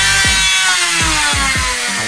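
Mini rotary grinder spinning a rubber polishing disc, its high motor whine peaking about a second in and then slowly falling in pitch. Background music with a steady electronic beat plays underneath.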